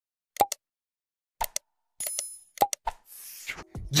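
Sound effects of a subscribe-button animation: a few short pops and mouse clicks, with a bell ding about two seconds in.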